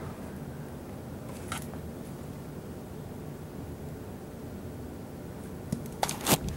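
Propane room heater running, a steady low hum, with a light click about one and a half seconds in and another faint one near the end.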